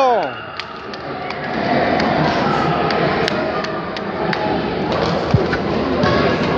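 Echoing sports-hall din during a youth futsal game: spectators' voices and shouts in a large hall, with scattered sharp knocks of the ball being kicked and a louder thump a little after five seconds. A shout trails off at the very start.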